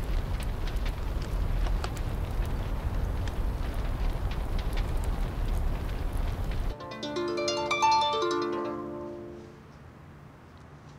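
A large open fire burning, with a steady low rumble and scattered crackles. About seven seconds in it cuts off and a short plucked melody plays, fading away.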